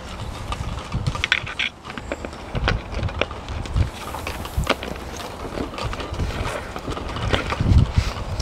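Hand-pump flit sprayer being fitted into a plastic bottle: scattered clicks and knocks of the brass and plastic fittings, with a louder knock near the end, over a low rumble of wind on the microphone.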